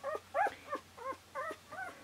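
Young puppy squeaking: a quick run of short, high whimpers, each one rising and then falling in pitch.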